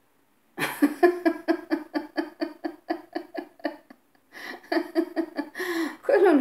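A person laughing: a long run of quick, even "ha-ha" pulses, about six a second, then a short pause and another burst of laughter near the end.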